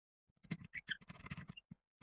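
Faint scratching and clicking as fingers handle a wire against a small battery-management circuit board, a cluster of small noises lasting about a second and a half, then a single click near the end.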